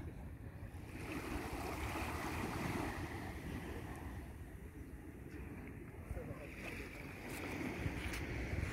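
Wind buffeting the microphone, with a rushing noise that swells and eases twice.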